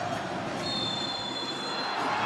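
Referee's whistle blown in one long, steady, high blast starting about half a second in: the full-time whistle ending the match.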